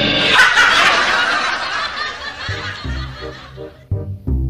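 Comedic laughter sound effect, loud at first and fading away; about two and a half seconds in, background music with a steady beat comes in.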